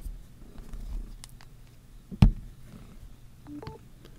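A Samsung Galaxy Note 10+ in a hard Speck Presidio Pro case knocks down once onto a wireless charging pad about two seconds in. Near the end a short electronic chime of rising tones sounds as the phone starts charging wirelessly through the case.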